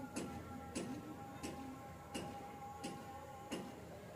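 Even ticking, about three ticks every two seconds, over a faint held tone that fades out near the end.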